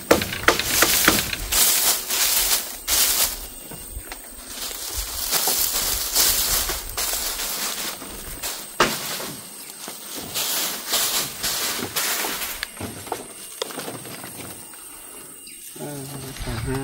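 Dry grass thatch panels rustling and scraping in a series of bursts as they are handled and laid onto a bamboo roof frame.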